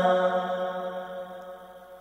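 A man's chanted Arabic recitation dying away at the end of a long held note, fading steadily over about two seconds.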